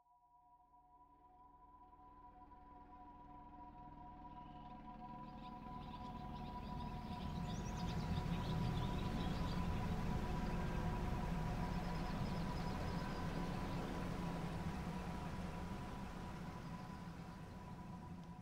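Ambient sound-design drone: two steady high tones held throughout, under a wash of noise and low rumble that swells in over the first eight seconds or so and eases slightly toward the end.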